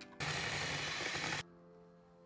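Batter being whisked fast in a plastic mixing bowl: a loud continuous scraping whir lasting about a second, which stops abruptly, over background music.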